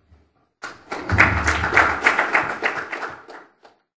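Audience applause starting about half a second in and dying away near the end, with a low thump about a second in.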